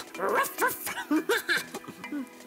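A dog's short yips and barks, about six in quick succession.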